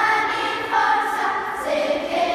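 A children's choir singing together, holding each note and stepping from one pitch to the next.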